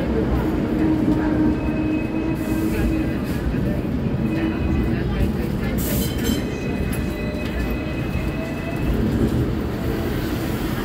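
Hong Kong double-decker tram running along its street track, heard from on board: a steady rumble of wheels and motor, with thin high whines coming and going.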